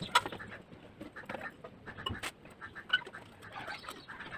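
Sharp clicks and light knocks of a white glass lamp globe being handled and fitted against a brass wall-lamp arm, with a few short chirps in the background.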